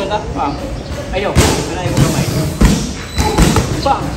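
Boxing gloves striking focus mitts: a few sharp punches, the two loudest about a third and two-thirds of the way in, with short bursts of voice between them.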